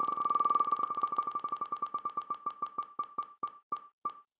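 Tick sound effect of an on-screen prize-draw spinning wheel, short beeping ticks, one for each segment passing the pointer. They start so fast they blur together and slow steadily to about three a second as the wheel decelerates toward stopping.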